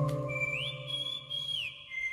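Background score music: a sustained low synth chord that fades out near the end, under a high whistle-like tone that slides up about half a second in, holds, and slides back down.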